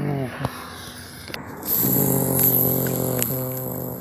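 A person's voice imitating a race-car engine for toy cars: a brief falling sound, then a steady, held engine-like drone lasting about a second and a half, with a few faint clicks.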